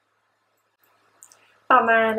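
Near silence, then a few faint short clicks a little past halfway, followed near the end by a woman beginning to speak in Thai.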